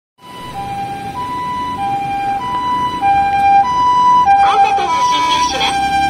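Japanese ambulance's two-tone siren on an emergency run, alternating a high and a low note each held a little over half a second, growing louder as the ambulance approaches. A voice over the vehicle's loudspeaker joins in over the siren near the end.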